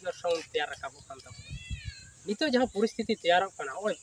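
Men talking in conversation, with a brief high call that rises and falls in pitch from a bit over a second in to about two seconds in, between stretches of speech.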